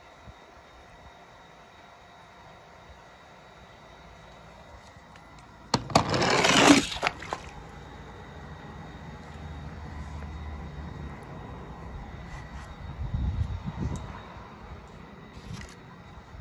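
A die-cast toy truck dropped into a swimming pool: one sudden splash about six seconds in, lasting about a second, over a quiet outdoor background.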